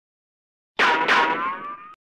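A comic cartoon sound effect: a single pitched twang about a second long that starts suddenly, dips and then rises in pitch, and fades out.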